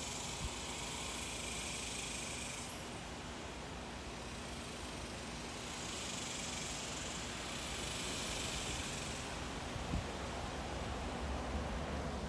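Outdoor background noise: a steady low hum under a hiss, with a higher hiss that drops out about three seconds in and comes back for a few seconds past the middle.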